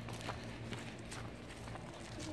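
Footsteps of people walking at a steady pace across a yard, about two or three steps a second.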